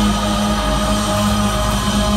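Live band playing amplified music over a concert PA, with long held notes sustained through the moment.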